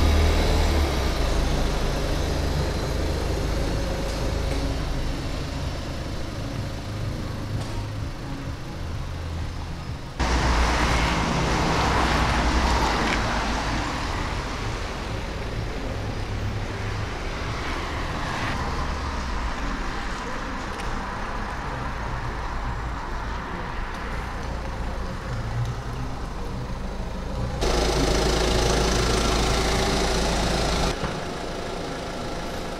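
Ford Focus hatchback's engine running, in edited clips with a sharp cut about ten seconds in. After the cut the car drives on a wet road, with a louder engine and tyre noise. Near the end the sound cuts to another vehicle's engine idling.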